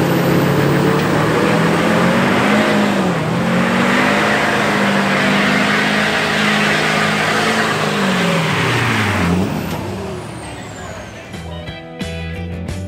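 A GMC Sierra's diesel engine revving hard in a burnout, with its rear tyres spinning. The engine note holds high, dips briefly, then falls away near the end as the revs drop.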